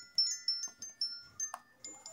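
Toy xylophone app on a smartphone, played through the phone's speaker: a quick run of short, bright chiming notes at several pitches, about four or five taps a second.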